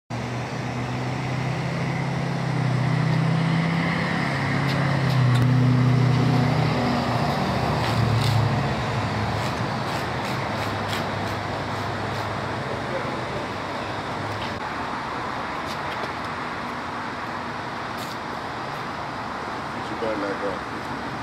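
Road traffic: a motor vehicle's engine hum swells, loudest about five or six seconds in, and fades by about nine seconds, over a steady hiss of passing traffic.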